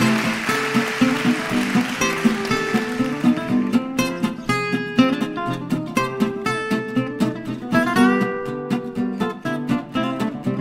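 Guitar music: a plucked guitar tune with many quick picked notes over a repeating lower part.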